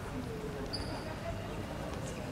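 Reverberant sports-hall ambience: indistinct distant voices over a low hum, with footsteps of a group walking on the wooden court floor. A brief high squeak about three quarters of a second in.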